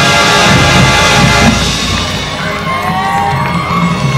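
Marching band playing loudly until the full sound breaks off about a second and a half in, leaving a quieter passage with percussion under whoops and cheers from the stadium crowd.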